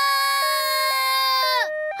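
A cartoon wailing cry made of two held notes. The upper note steps up and down twice, then both slide down in pitch near the end, like a despairing "waaah".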